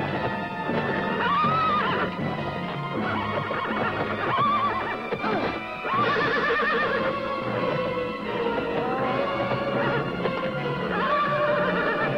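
A horse neighing several times, shrill wavering whinnies about a second long, over film-score music.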